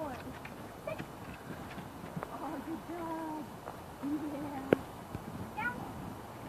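A dog's paws knocking on a wooden agility table, with one sharper knock about three-quarters of the way through, over faint voices.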